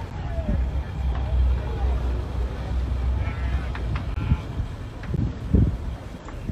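People talking indistinctly over a steady low rumble.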